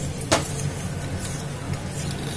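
Steady low hum and hiss of a pot of gravy bubbling on a lit gas burner, with one short knock about a third of a second in.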